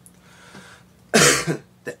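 A man's short throat-clearing cough, a little over a second in, louder than his speech around it.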